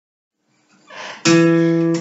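After a near-silent start and a faint brush of noise, a single acoustic guitar chord is strummed about a second and a quarter in and left ringing.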